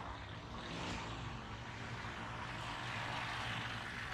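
Small engine of an auto-rickshaw droning steadily as it comes up close from behind, growing louder toward the end, over general street noise.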